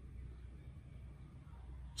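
Faint room tone with a low steady hum; no distinct sound.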